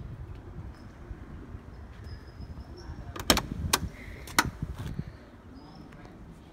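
A 1972 Porsche 911 coupe's door being opened: a few sharp metallic clicks from the handle and latch, about three to five seconds in, over a low rumble of handling noise.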